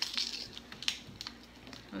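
A small tab-gum package being peeled and worked open by hand: a few light crinkles and clicks, most of them in the first second.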